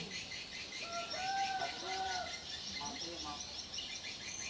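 Birds chirping steadily in the background, many short high chirps a second, with two rising-and-falling pitched calls between about one and two and a half seconds in.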